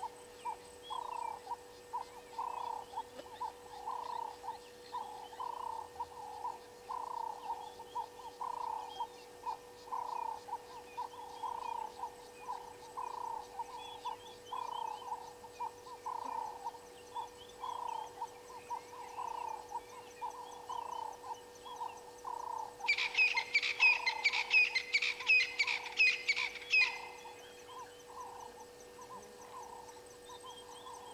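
A frog calling over and over, about one and a half short croaks a second. Near the end a louder burst of rapid high-pitched notes from another animal lasts about four seconds.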